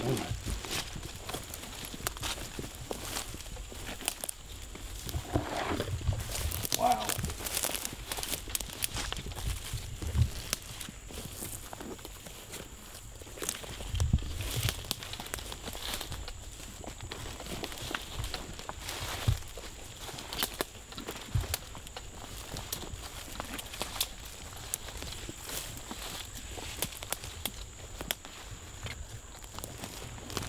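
Footsteps through dense brush: leaves and twigs rustling and crackling underfoot and against the legs, with scattered snaps, as people walk slowly through undergrowth.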